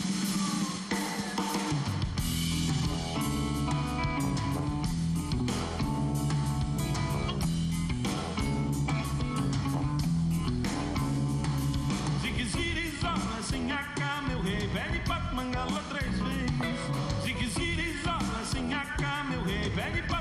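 Live band playing an instrumental passage in a maracatu groove on electric guitars, electric bass and drum kit. The low end of the full band comes in about two seconds in.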